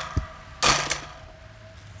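Golf club striking a plastic SMC table fan: a short dull thump just after the start, then a louder, sharper crack about two-thirds of a second in that rings briefly.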